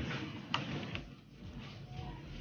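Faint handling sounds of a plant offshoot being turned in the hands, with one sharp click about half a second in.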